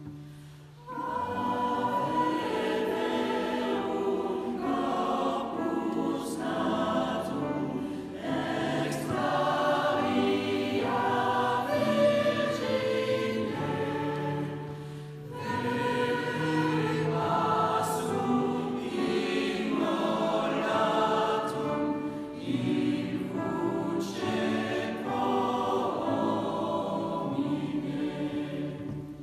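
Mixed choir of women's and men's voices singing in phrases under a conductor, in a church. The singing comes in about a second in and pauses briefly about halfway.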